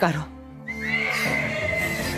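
A horse whinnies, its wavering call falling away in the first moment, over background music with a long high held note.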